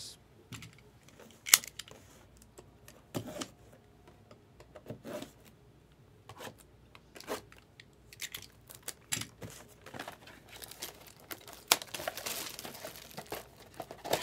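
Trading-card pack wrappers crinkling and tearing as packs are opened, with scattered crackles and ticks that grow denser and louder in the last few seconds.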